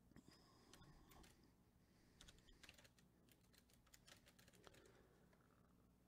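Faint, irregular clicking of a computer keyboard being typed on, against low room tone.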